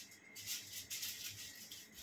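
Quick, soft rustling strokes, several a second, as hands, a comb and a brush work through hair.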